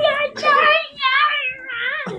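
A child's high-pitched voice making long, wavering drawn-out sounds without clear words, the pitch sliding down about three-quarters of the way through and rising again at the end.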